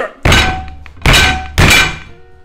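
Three heavy blows of a stick on a wooden desk top, the second and third coming quickly after one another, each a loud thunk that dies away quickly; the desk top is already broken open to its particleboard core.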